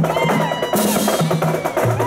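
Marching drumline of snare drums and bass drums playing a rapid cadence, with repeated low bass-drum hits under dense snare strokes.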